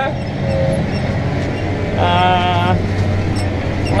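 Case Maxxum 125 tractor's diesel engine running steadily from inside the cab, working the ground behind a cultivator in maize stubble. About two seconds in, a short wavering tone sounds over it for under a second.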